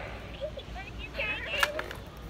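Faint voices with a single sharp click about one and a half seconds in.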